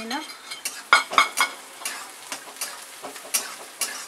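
A metal spatula scrapes and clinks against a metal kadhai as chopped onion fries in oil, with a sizzle underneath. The sharpest scrapes come about a second in and again near the end.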